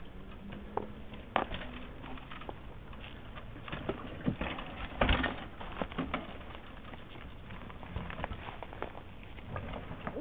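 Mountain bike rolling over rock and dirt: scattered knocks and clatter from the tyres, chain and frame, loudest about five seconds in as the bike passes close.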